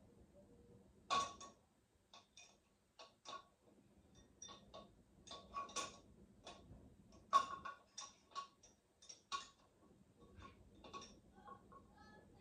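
Irregular light clicks and ticks, a few of them sharper, from hands working at the top of a tall cardboard shipping box, over a faint steady hum.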